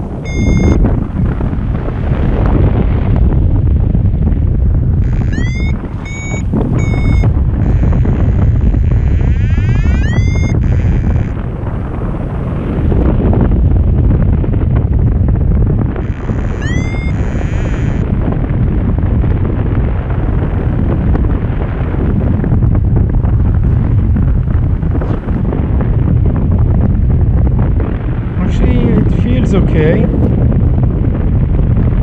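Steady, loud wind noise rushing over the microphone of a paraglider in flight. A few short, rising electronic chirps from the flight instrument (variometer) sound over it: near the start, a quick cluster a fifth of the way in, and once more a little past halfway.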